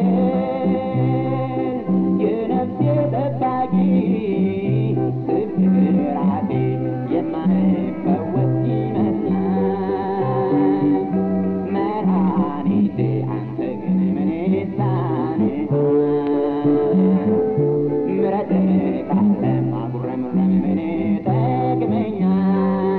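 Amharic gospel song (mezmur): a man singing over a plucked-string accompaniment, with a bass line that alternates steadily between two low notes.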